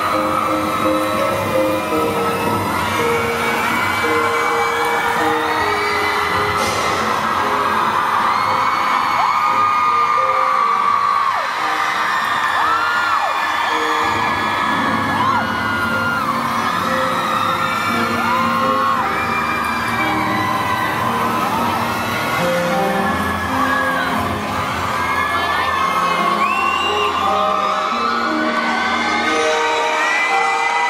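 Live pop ballad played loud on a concert sound system, with steady held notes, while the audience screams and whoops over it throughout in many short high-pitched shouts.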